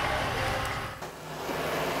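Low, steady rumble of a farm tractor's engine running in the field under general outdoor noise, dipping briefly about a second in.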